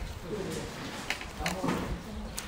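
A bird cooing amid faint background voices, with a few light clicks.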